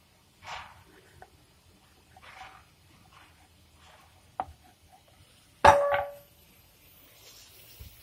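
Kitchen knife slicing through a rolled stuffed dough log onto a wooden board: a few soft cutting strokes and a tick. About six seconds in comes the loudest sound, a sudden metal clank that rings briefly.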